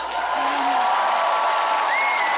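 Studio audience clapping and cheering loudly, with drawn-out whoops rising above the dense applause.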